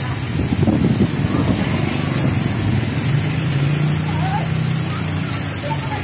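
Street traffic noise: a motor vehicle engine running, with a low steady hum that is strongest in the middle, and indistinct voices.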